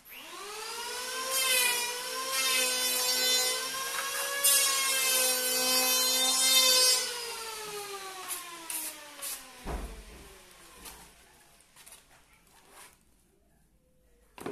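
A small motor whines up to a steady high pitch within about a second, runs for about seven seconds, then winds down, falling in pitch over the next three seconds. A dull thump comes near the end of the wind-down, followed by a few faint clicks.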